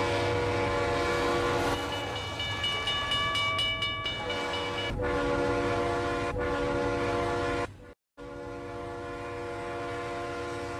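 Toy train locomotive's sound-system horn blowing in long, steady chord blasts over a low running rumble, with a higher-pitched horn chord between about two and five seconds in. The sound drops out briefly just before eight seconds in, then the horn resumes.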